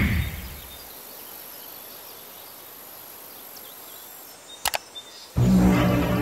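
The tail of a whoosh-and-burst intro sound effect dies away over the first second, leaving a faint, steady ambience. A sharp click comes about four and a half seconds in, and music starts suddenly near the end.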